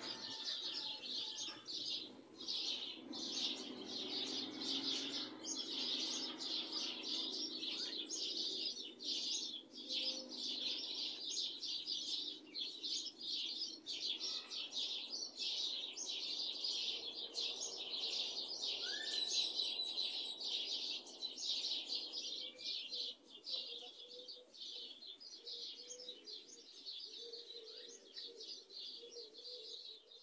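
Dawn chorus of many small birds chirping at once, a dense, continuous high twittering that thins out and grows quieter over the last several seconds.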